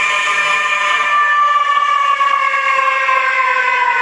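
A long siren-like wail holding one note with rich overtones, slowly falling in pitch, playing as part of a dance soundtrack.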